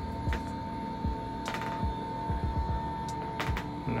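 Electric standing desk's lift motors running with a steady hum as the desk moves, heard under background music with a low beat.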